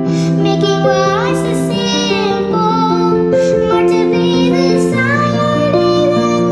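A young girl singing a song with sustained instrumental accompaniment of held chords and bass notes.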